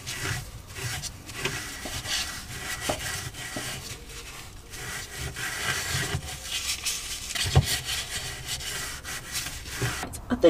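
A paint brush scrubbing wax-oil underseal onto a car's metal underbody, making irregular rubbing brush strokes. There is a louder knock about three-quarters of the way through.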